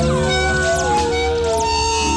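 Indie rock band playing a slow song: long held notes bend and slide down in pitch over a steady low end.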